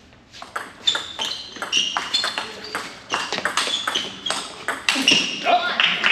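Table tennis rally: the ball clicks sharply and quickly between the paddles and the table, roughly four or five hits a second. Near the end a short shout ends the point, with a rising wash of noise after it.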